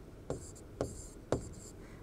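Marker pen writing on a board: three short, sharp strokes with faint scratching between them as an arrow and letters are drawn.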